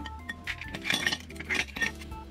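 A metal spoon stirring coffee in a drinking glass, clinking against the glass in a quick run of strikes that bunches up through the second half, over background music.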